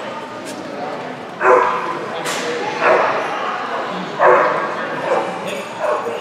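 A dog barking about five times in short, sharp barks, the loudest about a second and a half in and again past four seconds in, echoing in a large hall.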